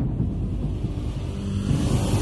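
A deep, steady rumble, the sound-effect bed of a TV news channel's animated intro sting.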